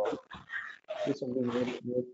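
A man's voice making short, hesitant speech sounds and fillers.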